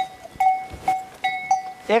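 A small bell clinking in short single strikes at one steady pitch, about every half second at an uneven rhythm. A voice starts near the end.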